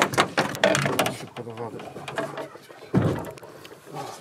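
A man's voice, indistinct, then a single sudden thump about three seconds in.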